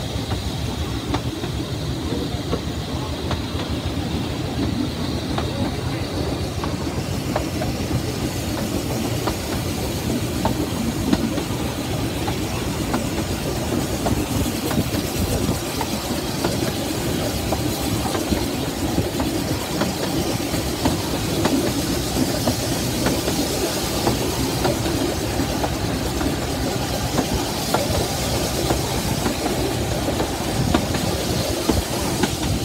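Narrow-gauge light-railway train running along the line, heard from a carriage window: a steady rumble of wheels on track, with frequent clicks and knocks from the rail joints.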